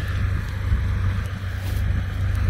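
Wind buffeting the microphone in an open field, a steady low rumble that rises and falls in gusts.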